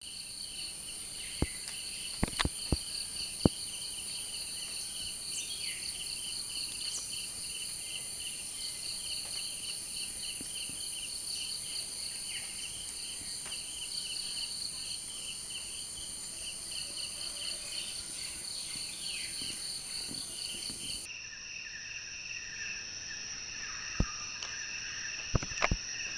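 Steady outdoor insect chorus of high-pitched pulsing trills, with a few sharp clicks in the first few seconds. Near the end the chorus changes to a lower set of trills.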